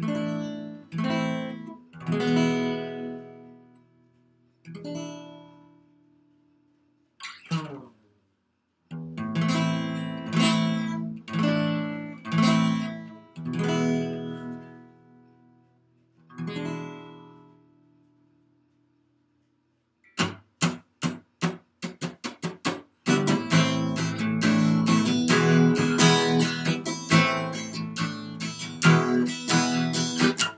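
Acoustic guitar played solo: single strummed chords, each left to ring and fade, with short silent gaps between them and a pause of about two seconds past the middle. Then a run of quick, short, choppy strums that settles into steady continuous strumming for the last several seconds.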